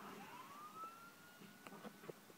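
A faint siren-like wail that rises in pitch over about a second and then holds steady, with a few light clicks near the end.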